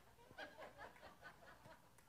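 Faint, soft chuckling: a short run of quiet laughs.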